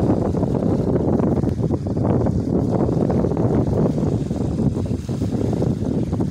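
Wind noise on the microphone, a steady low rumble, over small waves washing onto the shore.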